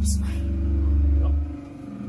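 Low, steady motor drone that cuts off about one and a half seconds in.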